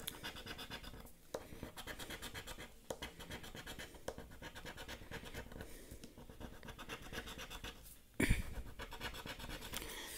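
Edge of a plastic casino chip scraping the latex coating off a scratch-off lottery ticket in quick, light back-and-forth strokes. A brief louder brushing noise comes near the end.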